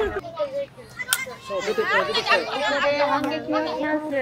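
Children's voices shouting and calling out across a football pitch, several at once, some calls held for a second or so. A single sharp knock comes about a second in.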